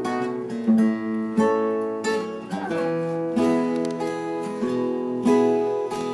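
Two acoustic guitars strumming chords together in a steady rhythm, the instrumental introduction of a folk-style song.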